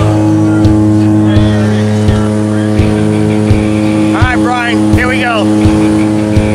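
Steady drone of a jump plane's engines heard inside the cabin during the climb, with a voice calling out briefly about four seconds in.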